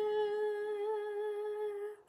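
A woman's voice holding one long sung note at the close of a playful 'dun, da, da, da' fanfare. It fades slightly and stops just before the end.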